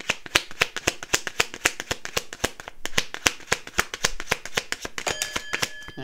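A deck of tarot cards being shuffled by hand: a quick, even run of card snaps, several a second.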